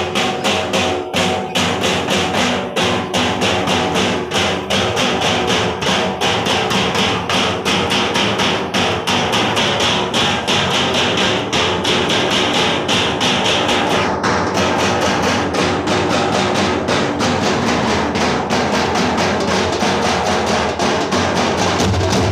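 A drum troupe beating large bass drums and other hand-held drums in a fast, steady, unbroken rhythm, loud and close.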